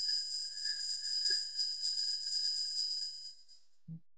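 Ringing tail of a chime, several high tones sustaining together and fading out over about three and a half seconds, followed by a brief low thump near the end.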